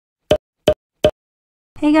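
Three short pitched pops, evenly spaced about a third of a second apart.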